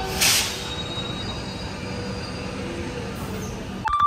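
Electric suburban commuter train at the platform: a steady rumble with thin, high, squealing tones from the wheels, and a short loud hiss of air about a quarter second in. Right at the end the sound cuts off to a short electronic beep.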